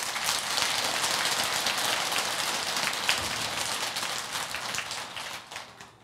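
Applause from a large seated audience: many hands clapping together, starting suddenly and dying away near the end.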